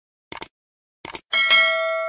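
Mouse-click sound effects, two quick clicks at a time, heard twice, then a bell chime struck about 1.3 seconds in and ringing on with several steady tones: the click-and-notification-bell effect of a subscribe button animation.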